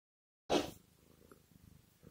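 Dead silence, then about half a second in a short burst of noise as a phone recording begins, followed by a faint, low, grainy rumble of room and microphone noise.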